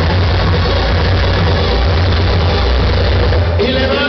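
Loud dance music played through a large sonidero sound system, with heavy bass. About three and a half seconds in the bass cuts out and held tones carry on.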